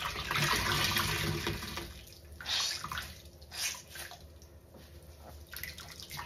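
A large wet sponge squeezed and worked in soapy water, squelching and sloshing: one long squeeze for about two seconds, then a few shorter squeezes.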